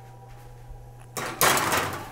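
A metal baking sheet going into the oven: one short scraping rush of just under a second, starting past halfway and fading.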